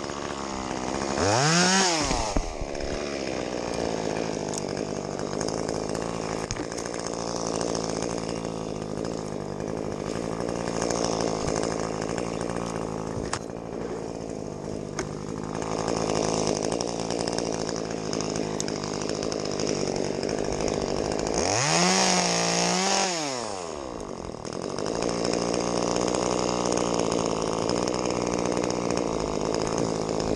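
Top-handle chainsaw idling steadily, revved up briefly twice: once just after the start and once about 22 seconds in, each time rising sharply in pitch and dropping back to idle.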